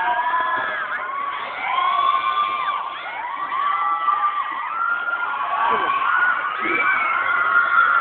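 Many high young voices shouting and cheering at once during a school girls' football match, overlapping calls and shrieks kept up without a break.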